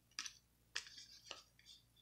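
Faint, brief scrapes and clicks of glossy Topps Chrome baseball cards sliding against one another as they are shuffled by hand, about five small strokes.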